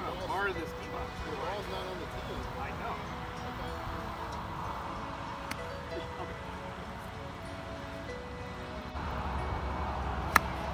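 Outdoor ambience with a steady low wind rumble on the microphone, faint music and low voices in the background, and one sharp click about halfway through.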